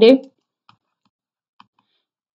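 The end of a woman's spoken word, then a quiet pause with two faint, short clicks about a second apart.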